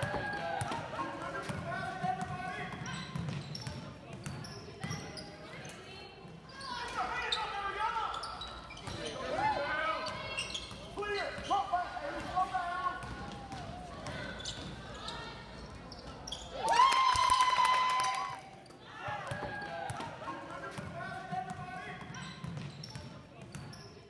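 Live sound of a basketball game in a gym: spectators' voices shouting and calling, with a ball bouncing on the court. About two thirds of the way through, a loud steady horn-like tone holds for about a second and a half.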